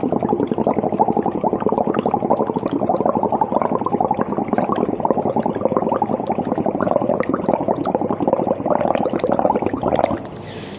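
Exhaled breath blown through a thin tube into a pink solution in a glass conical flask, bubbling steadily and rapidly before stopping at the end. The breath's carbon dioxide is being bubbled through the solution to test for it.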